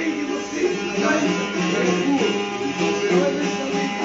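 Several long-necked Albanian folk lutes played together in a plucked dance tune, with a steady low note held under the melody.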